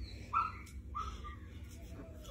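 A dog whining: two short, high whines, the first a little louder.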